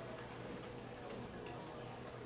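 Quiet room tone with a low steady hum and a few faint ticks.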